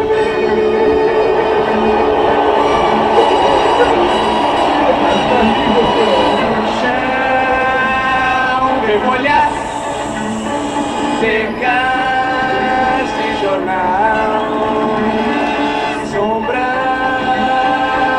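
Live rock song with orchestral backing. For the first few seconds the band and orchestra play thickly together. From about seven seconds in, several voices sing in harmony over them.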